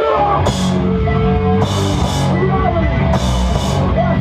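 Hardcore punk band playing live and loud, heard from right by the drum kit: a heavy wall of bass and guitar with drums, and cymbal crashes ringing out about three times.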